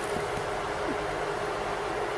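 Steady hiss of background noise with a faint steady hum under it, and a few soft rustles of the jacket's lining fabric being handled.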